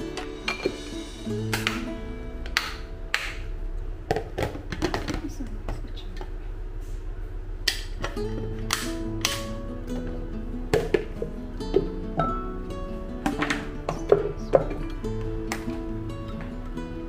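Background guitar music, with scattered sharp clinks and taps of glass and plastic food-storage containers and lids being handled and set down.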